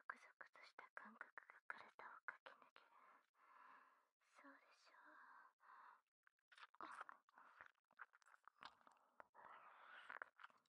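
Faint close-miked whispering mixed with quick wet mouth clicks, typical of ASMR mouth sounds.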